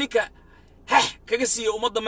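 A man speaking in Somali in short bursts with brief pauses.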